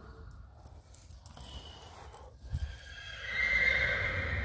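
A horse whinnying: a long, loud call that begins about three seconds in, after a dull thud.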